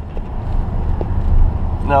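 Steady in-cabin drone of a 2012 VW Jetta's 2.0 L four-cylinder turbodiesel and road noise while cruising, the car held in third gear in the DSG's manual mode.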